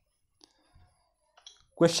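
A few faint, short clicks spaced through near silence, then a man's voice starts speaking near the end.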